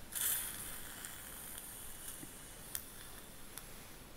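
Surgical suction tip drawing air and fluid from the mouth: a hissing surge right at the start, then a steady high hiss, with two sharp clicks of a metal instrument in the second half.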